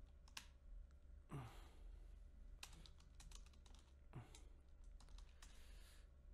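Faint keystrokes on a computer keyboard: scattered typing in a few short runs with pauses between.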